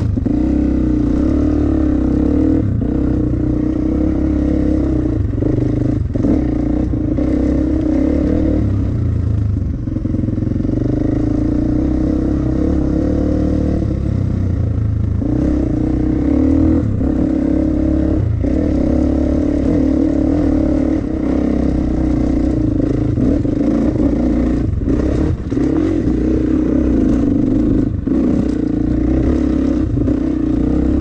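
Dirt bike engine running while riding a trail, mostly at steady revs, easing off briefly a few times, most clearly about ten and fifteen seconds in. Scattered sharp knocks and clatter come from the bike over rough ground.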